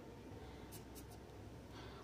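Faint, brief scratching of fingertips placing and pressing dry coloured rangoli powder onto a smooth tile, a few light scrapes about a second in.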